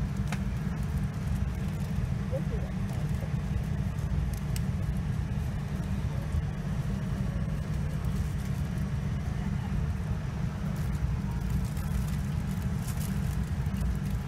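Steady low rumble of a Boeing 787-9 airliner cabin standing on the ground, its air conditioning and systems running, with a faint steady tone above it and a few faint clicks.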